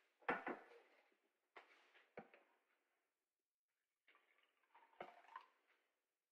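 Faint, scattered knocks and clinks of kitchenware being handled: a mug and a glass French press coffee maker picked up and set down.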